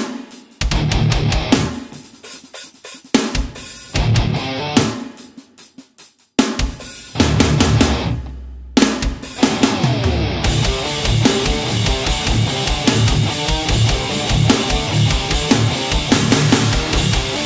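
Heavy, mid-scooped distorted electric guitar riffing in drop D: an early-80s Vester MOD-800 semi-hollow guitar through a Boss Katana amp's clean channel with its built-in MT-2 Metal Zone distortion. It plays in short chugged bursts with brief silent breaks for about the first six seconds, then riffs on continuously.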